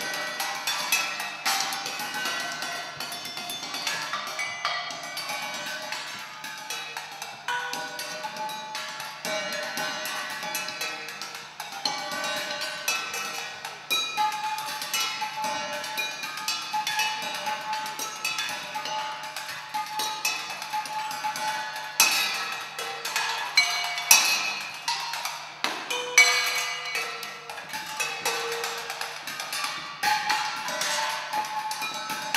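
Solo percussion improvisation: dense, quick strikes on pitched, ringing percussion with a knocking, cowbell- and wood-block-like character, with a few louder accents near the end. A faint steady low hum sits underneath.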